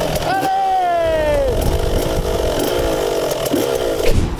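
125 cc two-stroke motocross bike engine: the revs drop sharply over the first second or so, then it runs at a fast idle, and it dies away just before the end.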